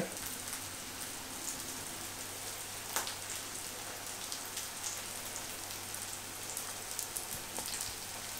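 Eggs frying with onions and tomatoes in oil in a pan: a steady, soft crackling sizzle, with one slightly louder crack about three seconds in.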